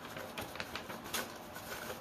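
Construction paper rustling softly as it is rolled around a cardboard paper-towel tube, with a few light crackles.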